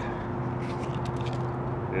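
Faint light ticks of small wooden matches and cardboard matchboxes being handled, over a steady low hum.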